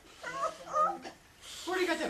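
A pet talking parrot making short speech-like vocal sounds: one stretch in the first second and another starting near the end.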